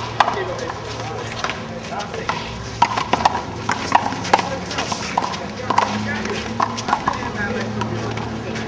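Repeated sharp smacks of a small rubber handball, struck by hand and bouncing off the wall and concrete court, with voices talking in the background.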